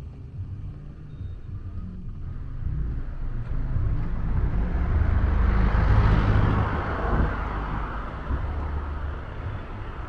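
Street traffic: a motor vehicle passing close by, its engine and tyre noise swelling to a peak about six seconds in, then fading away.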